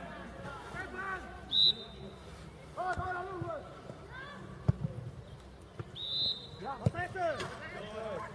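A football kicked hard, a sharp thud near the middle, with lighter ball thuds before and after it, amid players' shouts on the pitch. Two short referee's whistle blasts, about a second and a half in and again at about six seconds.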